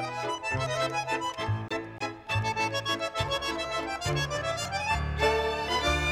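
Instrumental passage of a tango vals played by a tango orchestra: bandoneon leading with violins over a steady waltz beat in the bass.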